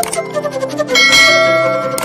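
Bright bell chime sound effect over background music with plucked notes. The chime strikes about a second in and rings on, fading slowly.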